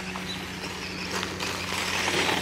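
Losi Promoto MX electric RC motorcycle running in circles at about half throttle on gravel, its rear tyre drifting wide; a steady low hum over a gravelly hiss.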